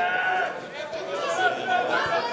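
Voices shouting during a football match: one long drawn-out call at the start, followed by shorter shouts.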